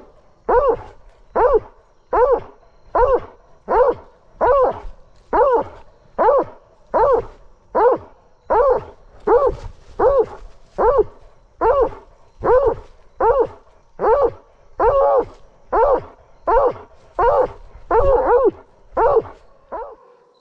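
Blood-trailing hound baying at a wounded buck held at bay, heard at very close range: a steady, even run of loud barks, a little more than one a second.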